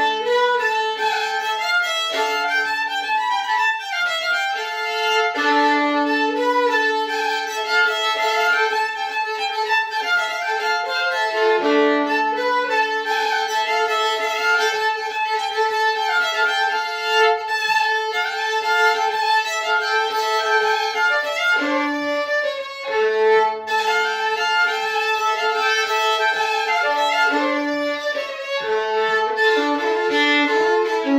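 Solo fiddle playing a Swedish folk polska: a bowed melody running over sustained lower notes.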